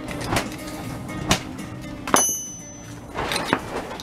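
Small steel parts of a vacuum check valve bracket clicking and clinking together by hand as a square nut is fitted into its clamp: a handful of sharp clicks, the loudest about halfway through ringing briefly. Background music plays underneath.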